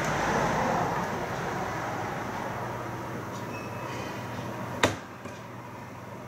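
Film trailer soundtrack playing quietly from computer speakers: a noisy rumble that slowly fades, with faint low steady tones under it. A single sharp click comes nearly five seconds in.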